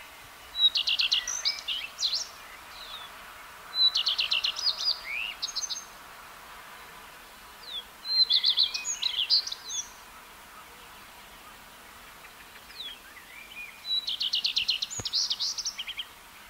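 Common redstart singing four short strophes a few seconds apart. Each starts with the same motif, a brief note and a quick run of repeated notes, then goes on in a varied twitter.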